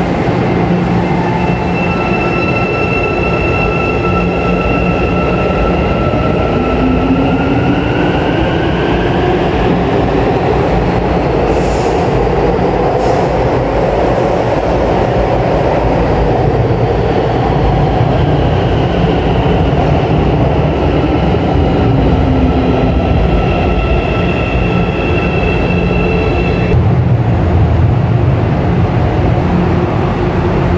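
Electric metro train on São Paulo's Line 4-Yellow, its traction motors whining over a steady rumble. The whine climbs in pitch as the train picks up speed, then falls again as a train slows. Two short hisses come near the middle.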